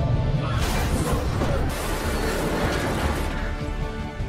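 F-14 Tomcat fighter jet hitting an aircraft carrier deck: a long crashing scrape starting about half a second in and lasting about three seconds, over loud orchestral film score.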